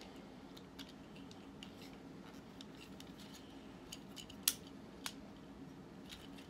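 Faint clicks and light rattling of a plastic toy figure and its armor piece being handled and worked, with two sharper clicks about four and a half and five seconds in, over a steady low hum.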